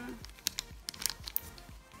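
Clear plastic packaging sleeve crinkling as it is handled: a scatter of irregular sharp crackles, with two louder snaps about half a second in and just after a second in.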